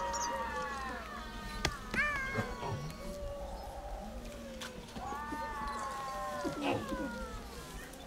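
A cat meowing: a long drawn-out call that falls away in the first second, a short rising call about two seconds in, and another long arching call about five seconds in.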